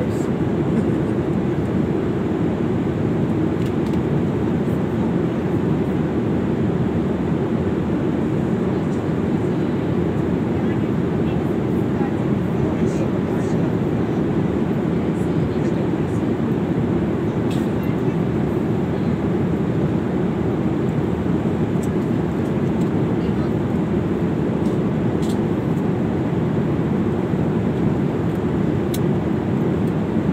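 Steady jet airliner cabin noise at cruise: an even low rumble of engines and rushing air, with a few faint ticks.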